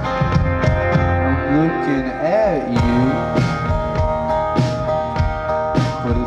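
Live rock band playing: acoustic guitar over a drum kit keeping a steady beat, with a note that bends up and back down about two seconds in.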